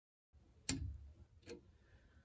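Immersion heater thermostat's trip-switch reset button clicking as it is pushed back down with a screwdriver: a sharp click, then a fainter one. The click means the tripped overheat cutout has been reset.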